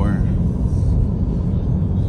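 Steady low road and tyre rumble inside the cabin of a moving Tesla Model 3 electric car, with a voice trailing off at the very start.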